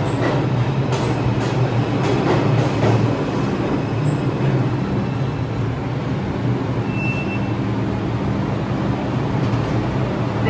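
R142 subway train pulling into the station and slowing to a stop, with a steady low hum throughout. Its wheels click over rail joints in the first few seconds, the clicks growing sparser as it slows. A short high squeal comes about seven seconds in.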